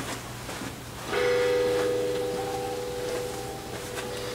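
A ringing tone of several pitches sets in about a second in and fades slowly, over a low steady hum.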